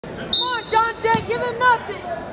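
A voice yelling encouragement from the sidelines of a wrestling match, in several loud, high-pitched bursts.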